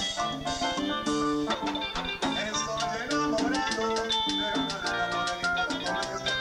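Live chicha (Peruvian cumbia) band playing an instrumental passage with no vocals: an electronic keyboard melody over a quick, steady percussion beat.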